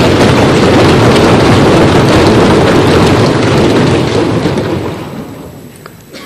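Members of parliament applauding in a large chamber: loud, dense applause that starts at once and dies away over the last couple of seconds.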